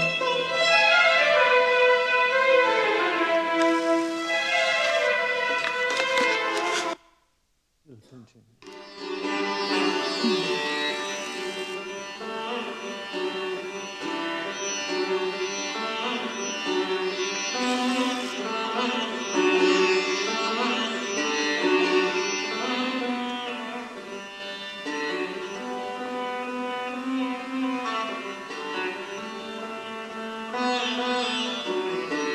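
Recorded sitar concerto music, the sitar playing melodic runs over orchestral string accompaniment. About seven seconds in, the music drops out for under two seconds, then resumes.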